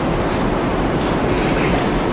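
Steady, even hiss with a low rumble and no voice: the background noise of the hall and its sound system.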